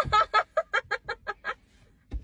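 A person laughing in a fast, even run of about ten short 'ha' bursts that fade and stop about a second and a half in.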